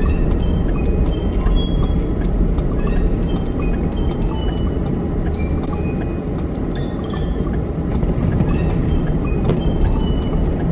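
Steady low rumble of road and engine noise inside a moving car's cabin, with short high tinkling notes scattered through it.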